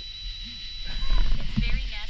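A ghost-hunting REM pod doll speaking a short recorded voice phrase, heard as "It's very nasty here", starting about half a second in and quieter than the voices around it. It is set off by something near its sensor. A steady high tone fades out about a second in.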